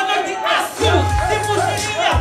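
A hip hop backing beat with a deep bass note, and a crowd shouting along in short repeated calls.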